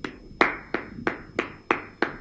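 One man clapping his hands about six times, evenly at roughly three claps a second.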